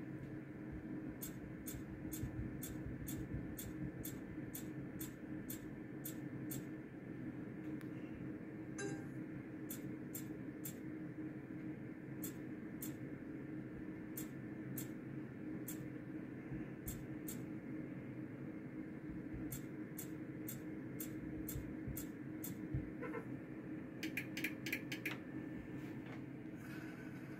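Roulette gaming machine's touchscreen giving a short, sharp click as each chip is placed on the betting layout, about two clicks a second in runs, over a steady low hum from the machine. A quicker cluster of clicks comes near the end.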